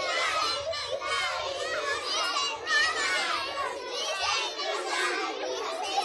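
A group of young children's voices chattering and calling out over one another, with no single clear speaker.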